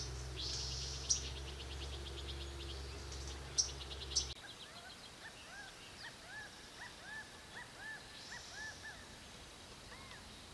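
Wild birds singing: first fast, high trills of rapidly repeated notes over a steady low hum, then, after the hum stops about four seconds in, a series of short arched whistled notes repeated two or three times a second.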